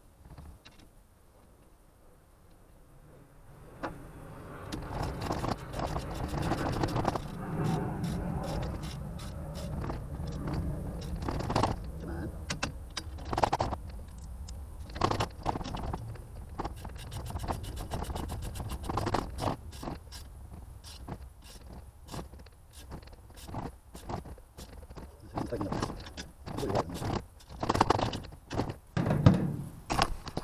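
Metal clinks and scrapes of a ratchet and socket being worked on the nuts of a Hustler vertical antenna's aluminium base. Under them a low rumble swells about four seconds in and then fades slowly.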